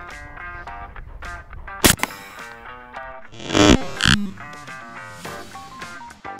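A single sharp shot from an Umarex Hammer .50-caliber pre-charged pneumatic air rifle about two seconds in, over background guitar music. A second, longer loud burst follows about a second and a half later.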